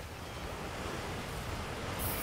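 Ocean surf washing on a beach, a steady rushing that swells slightly louder through the moment, with some wind.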